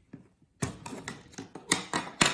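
3D-printed plastic base covers being pulled off and set down on a wooden table: after a short quiet moment, a few sharp plastic clacks with scraping between them.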